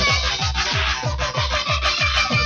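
Hardcore dance music played in a live DJ mix: a fast, steady kick drum, each kick dropping in pitch, under busy synth sounds.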